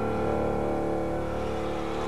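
Band holding a sustained closing chord, many notes together with a steady pulsing in the bass, at the end of a live folk-rock song.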